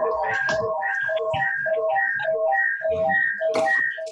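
Audio feedback loop through open microphones on a video call: a whistling tone that pulses evenly, repeating a few times a second.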